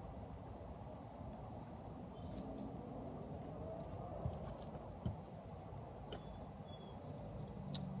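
Quiet outdoor background with a steady low rumble, and a few soft knocks and rustles as cloth hats are picked up and handled on a table.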